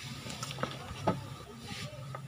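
Low handling noise: a few light clicks and knocks as the electrical cord is moved about on the counter, with a short hiss near the end.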